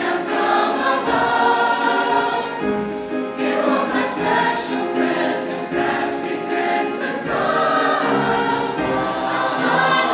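Mixed choir of teenage boys' and girls' voices singing together, sustained chords moving from note to note with crisp consonants.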